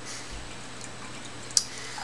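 Beer being poured from a glass bottle into a tilted stemmed glass, a quiet steady pour, with one short click about one and a half seconds in.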